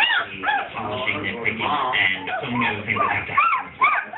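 Four-week-old basset hound puppies whimpering and yipping: short, high cries that rise and fall, about two or three a second and more frequent near the end.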